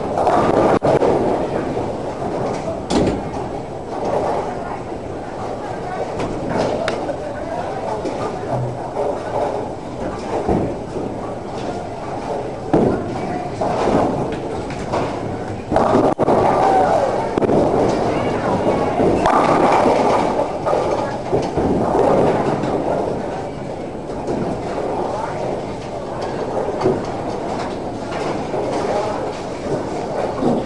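Bowling alley din: balls rolling down the lanes and pins crashing, several sharp crashes standing out, over a steady background of people talking.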